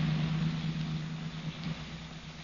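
Radio-drama sound effect of a car engine running steadily under a hiss, fading out.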